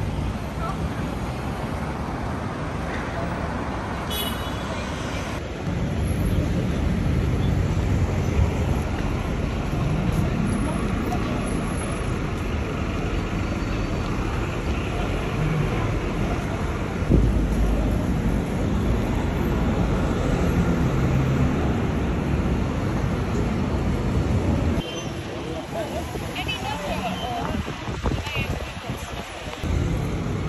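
Busy city street traffic: cars, taxis and double-decker buses passing, with passers-by talking. A deeper engine rumble comes in about six seconds in and holds until near the end.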